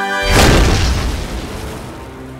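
Cartoon explosion sound effect: a single boom about half a second in that fades away over the next second and a half, over background music.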